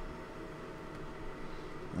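Quiet room tone: a faint steady hiss with a low hum, and no distinct handling or tool sounds.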